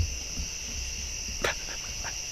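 Steady high trill of crickets chirping, over a low rumble, with a single short click about one and a half seconds in.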